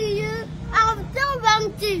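A young child's high voice in drawn-out, sing-song syllables that rise and fall, several short phrases in a row, with a faint low steady hum behind it.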